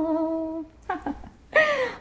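A woman's unaccompanied voice holding the last note of a song, which ends about two-thirds of a second in. Near the end comes a short vocal sound falling in pitch.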